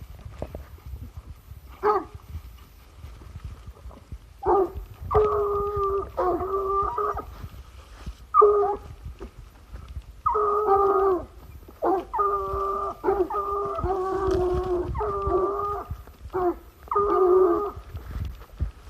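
Bruno de Saint-Hubert scent hounds baying in long, drawn-out calls while following a trail: one short call about two seconds in, then a run of repeated calls from about four and a half seconds on.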